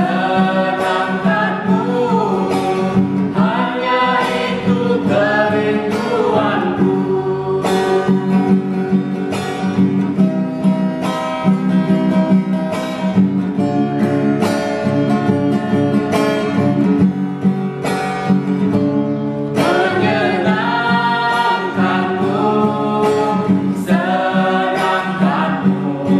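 A small group of men's and women's voices singing a worship song together to a strummed acoustic guitar. The voices drop out for a guitar-only passage in the middle and come back in near the end.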